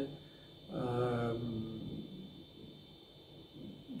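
A man's drawn-out hesitation sound, one held 'uhh' of about a second, early in a pause in his speech. Then low room tone with a faint steady hum.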